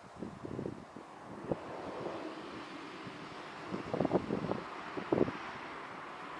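Road traffic: the steady hiss of a vehicle grows louder as it approaches. A few short gusts of wind hit the microphone, the strongest about four and five seconds in.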